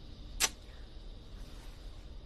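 A single short, sharp swish about half a second in, as a stick-on fake moustache is pulled off the lip. Otherwise there is only faint background noise.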